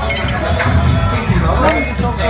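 Two sharp clinks of tableware, one near the start and one near the end, over background music and chatter.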